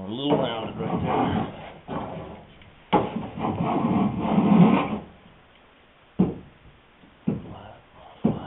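Small hand plane shaving a wooden boat rail, trimming its bevel toward flat. There are two longer strokes in the first half, then two short, sharp strokes about a second apart near the end.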